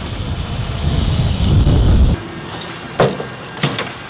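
A loud low rumble that cuts off abruptly about two seconds in. Then a BMX bike rolls over brick paving, with two sharp clacks of the bike against the ground, well under a second apart, near the end.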